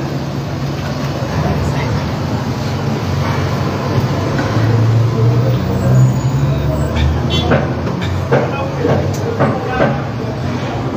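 Indistinct voices in a room over a low, steady rumble, with short bursts of voice or laughter in the second half.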